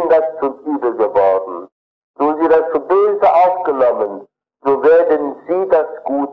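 A man lecturing in German, speaking in phrases with two short pauses.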